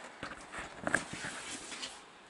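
A clear plastic storage tub being slid out of a shelving rack: a few light knocks and scrapes of plastic, mostly in the first second.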